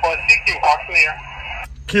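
A distant ham operator's voice received on single-sideband through the Guohetec Q900 transceiver's speaker, thin and narrow-band. The received voice cuts off suddenly about one and a half seconds in, as the radio switches over to transmit.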